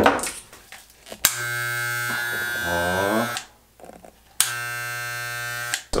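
Electric hair clippers switched on and buzzing steadily for about two seconds, switched off, then run again for about a second and a half, each run starting and stopping sharply.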